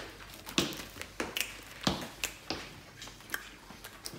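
Mouth sounds of chewing a big wad of bubble gum: a string of short, wet smacks and clicks, about two or three a second at an uneven pace, as the gum is worked up to blow a bubble.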